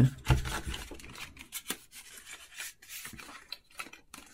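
Hands rummaging through cardboard watch boxes and their inserts: scattered rubbing and scraping of card with light taps and clicks.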